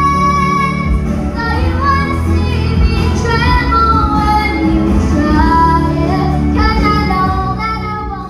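A girl singing a held, gliding melody into a handheld microphone over musical accompaniment with a steady bass.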